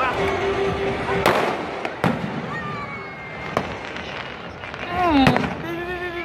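Fireworks shells bursting: a sharp bang about a second in, followed by smaller bangs at about two, three and a half and five seconds. Spectators' voices are heard between the bangs, one loud falling cry near the end.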